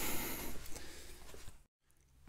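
Faint room tone with a few soft clicks, fading down and cutting to dead silence near the end.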